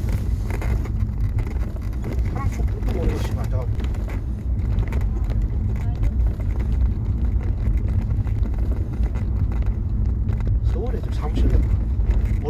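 A man's voice on a covert audio recording, faint and broken, speaking briefly near the start, about three seconds in and again near the end, over a steady low rumble and a hum.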